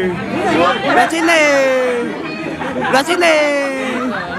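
A person's voice in drawn-out, sing-song phrases, each sliding down in pitch, with other voices chatting around it.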